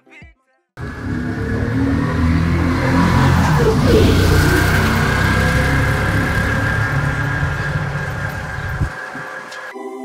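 Auto-rickshaw (tuk-tuk) engine and street noise as it passes close and drives off, a steady rumble loudest about four seconds in and then easing away before cutting off abruptly. Music starts just before the end.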